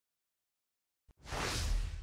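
After a second of dead silence, a faint click and then a short breathy rush of about a second: a narrator's quick intake of breath into the microphone.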